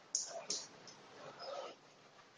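Faint movement sounds of two people sparring Wing Chun hands: two quick sharp swishes or scuffs near the start, then a softer, longer scuffing sound before the end.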